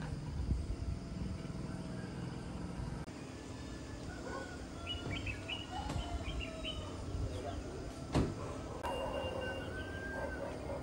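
Village evening ambience: birds chirping and whistling, with a low steady hum in the first three seconds and a single sharp knock about eight seconds in.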